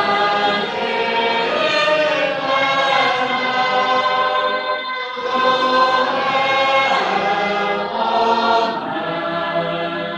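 A congregation singing a metrical psalm together, unaccompanied, with sustained sung lines and a short break between phrases about five seconds in.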